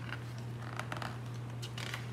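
A picture book's paper page being turned by hand: two short rustling swishes, one just under a second in and one near the end, with light paper clicks, over a steady low hum.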